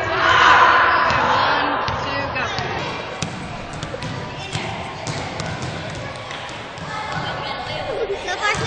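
Basketballs bouncing on a gym floor, a scatter of sharp thuds, under voices; a loud stretch of voices fills the first two seconds.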